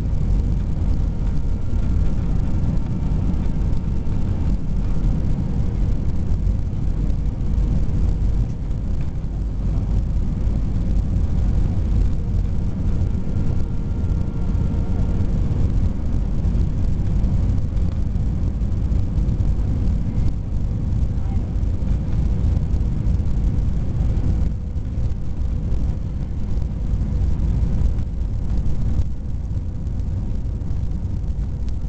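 Steady low roar inside the cabin of an Airbus A320 descending to land: engine and airflow noise, with faint steady engine tones over it. The level drops slightly near the end.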